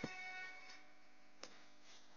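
A single plucked string note struck at the start, ringing briefly and fading within about half a second; a faint click follows about one and a half seconds in.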